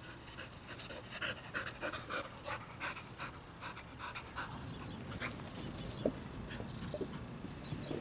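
Black Labrador retriever panting close by, a quick even rhythm of about three breaths a second, with one short sharp sound about six seconds in.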